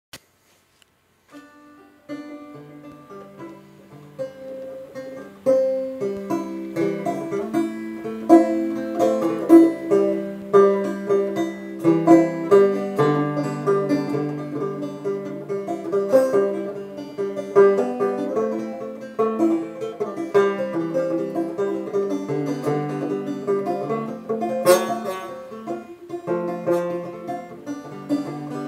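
Open-back five-string banjo, a 1997 Bart Reiter, being picked in a quick run of notes. It starts softly and gets louder about five seconds in.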